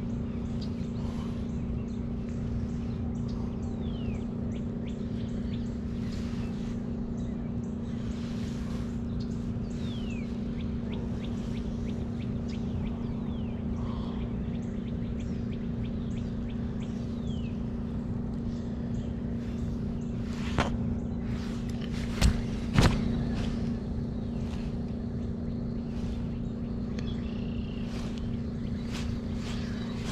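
A steady low hum runs throughout, with a few faint bird chirps. Three sharp clicks come about two-thirds of the way through.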